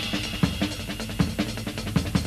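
Drum kit playing a quick break of kick, snare and cymbal strokes, with a few harder accents, while the rest of the band has dropped low.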